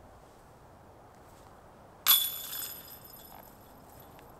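A putted disc striking the chains of a metal disc golf basket about two seconds in: one sharp clash, then the chains jingle and ring, fading out over about a second. It is the sound of a made putt.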